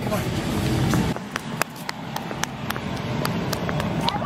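Footsteps of a small child in sandals on a concrete sidewalk: sharp clicks about three or four a second, starting a little over a second in.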